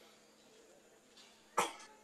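Quiet room tone, then a single short cough about one and a half seconds in.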